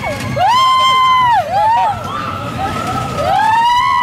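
Riders on a mine-train roller coaster screaming twice, each scream a long cry that rises, holds for about a second and falls away, the second starting about three seconds in, over the low rumble of the train on its track.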